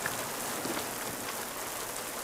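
Steady rain falling.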